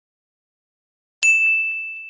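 Silence, then about a second in a single bright, bell-like ding that rings one high clear tone and fades away over about a second.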